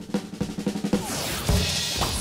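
Snare drum roll of rapid strokes for about a second, then a loud drum hit about three-quarters of the way through with a bright, hissing wash above it.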